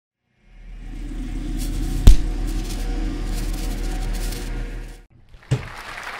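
Intro music sting: a low sustained drone fades in, a single sharp hit strikes about two seconds in, and the drone fades out near the five-second mark. A short click follows.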